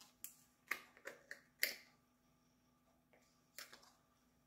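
Faint, short clicks and crinkles of small plastic wax-melt packaging being handled and opened, five in the first two seconds and two more near the end.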